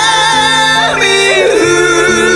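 High male voice singing a ballad melody in long held notes that slide from one pitch to the next, over steady sustained low accompaniment.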